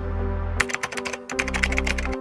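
Background music with a steady bass line, over which a keyboard-typing sound effect clicks rapidly in two quick runs, starting about half a second in.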